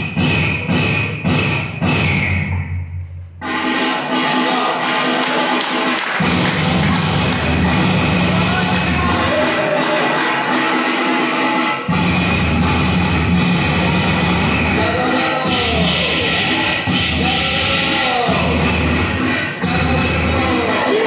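Dance music played loud over a sound system for the performers. It drops out briefly about three seconds in, resumes, and changes abruptly about twelve seconds in, with sliding tones in the later part.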